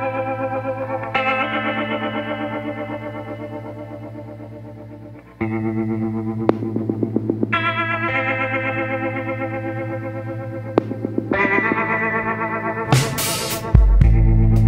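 Background music: sustained, effects-laden chords, struck afresh every few seconds and fading away between.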